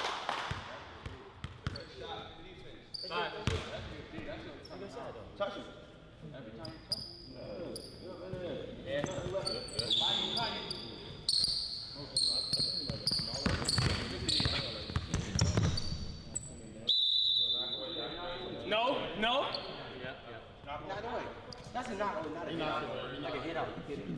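A basketball being dribbled on an indoor hardwood court in a large gym, with people talking and calling out over it.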